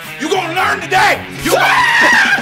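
A man yelling and screaming in anger, ending in a long high-pitched scream about three quarters of the way in, over background music with a steady bass line.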